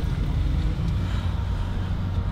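A Jeep's engine running with a steady low hum, heard from inside the cabin.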